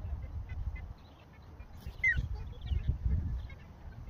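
Wind buffeting the microphone in gusts, easing for a moment about a second in, with one short, slightly falling bird chirp about halfway through.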